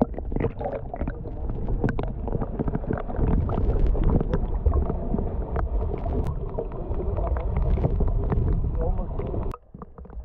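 Muffled underwater rumble and gurgling of sea water heard through a camera held below the surface, with scattered clicks. It cuts out briefly near the end.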